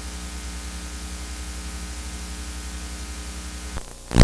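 Steady electrical mains hum with a layer of hiss from a blank stretch of analogue videotape, with a faint click near the end.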